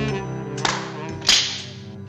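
Cartoon sound effect: a hissing whoosh builds for about half a second and ends in a sharp, whip-like crack, then fades. It plays over the cartoon's jazzy music score.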